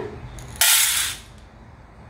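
A cup of whole white urad dal poured into a stainless steel bowl: the grains hit the steel in a sudden rattling rush that starts about half a second in, lasts about half a second and quickly tails off.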